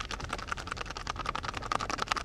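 Old film projector clattering: a rapid, even run of clicks, about a dozen a second.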